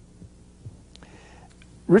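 A pause in speech at a microphone: a steady low electrical hum with a few faint soft knocks, and a brief faint rustle of paper being handled at the lectern about halfway through. A man's voice starts again at the very end.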